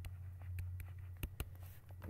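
Pen stylus writing on a tablet: several light ticks and scratches as a word is handwritten, over a steady low hum.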